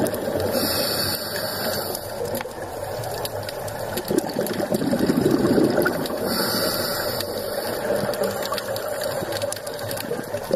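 A scuba diver's regulator breathing underwater, heard through the camera housing: a short hiss of inhalation about half a second in and again after six seconds, with a burst of bubbling exhaled air between them.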